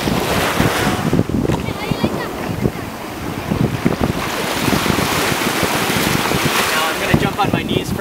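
Wind buffeting the microphone, with small waves washing in shallow seawater.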